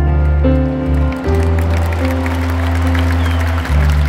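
Live band playing a slow song in a gap between sung lines, with held chords over a steady bass note. A crowd cheers and claps over the music from about a second in.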